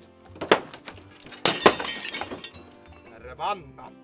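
A heavy hammer blow strikes the wooden wall planking about half a second in. About a second later a glass window pane breaks and shatters, with the glass tinkling on for most of a second.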